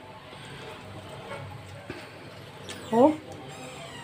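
Faint soft dabbing and scraping of a silicone basting brush, scooping a wet ghee-and-spice mixture from a plastic bowl and spreading it over a whole duck, over quiet room noise. A short spoken word comes about three seconds in.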